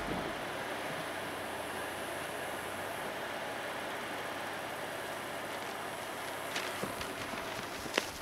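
Steady outdoor ambience, an even hiss with no engine note, and a few light clicks near the end.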